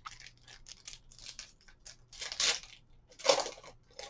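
Foil wrapper of a Pokémon card booster pack being torn and crinkled by hand, in a few short rustling bursts, the loudest near the end.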